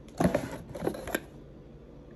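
Cardboard gift box being handled as its lid is opened: a few light taps and rustles in the first second or so.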